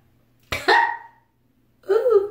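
A woman coughs once, briefly, about half a second in.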